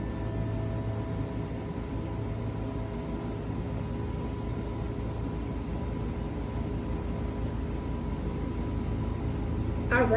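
Brass singing bowl ringing out after being struck, several tones fading one by one until one middle tone lingers faint almost to the end. Under it runs a steady low motor rumble, a lawn mower running outside.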